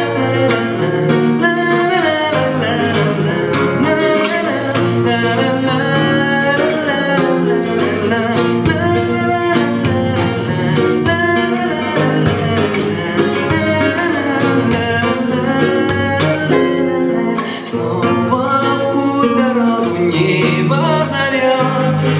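Nylon-string classical guitar strummed through a chord progression, with a young man's voice singing a melody along with it.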